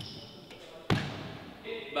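A single sharp thud about a second in: basketball sneakers landing on a hardwood court after a two-footed vertical jump, with a short echo in the hall. A man starts speaking near the end.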